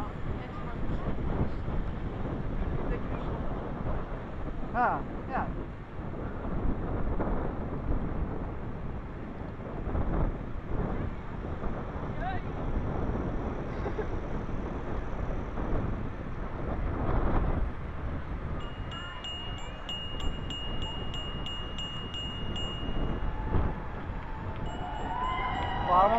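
Wind buffeting the microphone of a camera on a moving bicycle, with a steady rush of rolling noise. A high, steady ringing tone sounds for about four seconds past the middle.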